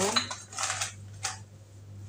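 Whole black peppercorns rattling against the clear plastic chamber of a battery-operated pepper grinder as it is handled: three short rattles in the first second or so, then quieter.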